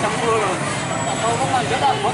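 Several people's voices chattering and calling out over a steady bed of street and traffic noise.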